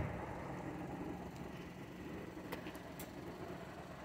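Faint, steady low hum of an idling engine, with a couple of light ticks.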